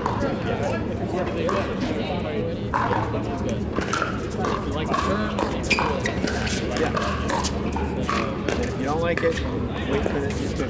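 Pickleball rally: sharp pops of paddles striking the hollow plastic ball every second or so, over a steady background of chatter from people around the courts.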